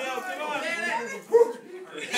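Several voices talking indistinctly, with one short, loud yelp about a second and a half in.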